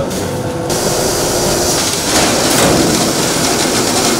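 Steady, loud machinery noise of a grain-bagging line, with the conveyor belt and bagging machines running; the noise changes abruptly under a second in.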